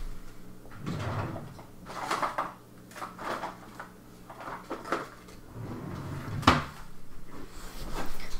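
Fountain pen and small plastic parts being handled on a table: a handful of light knocks and clicks spread over several seconds, the sharpest one near the end.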